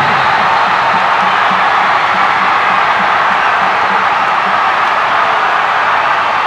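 A packed basketball arena crowd cheering steadily in celebration of a game-winning dunk at the buzzer, with music underneath.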